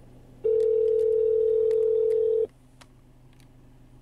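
Telephone ringback tone over the car's hands-free phone system: one steady ring, starting about half a second in and lasting two seconds. It signals that the dialled number is ringing while the call connects.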